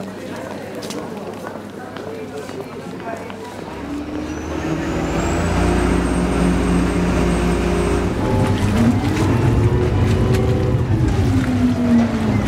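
A water-bus (vaporetto) engine: a low rumble that comes in about four seconds in, grows louder and shifts in pitch near the end.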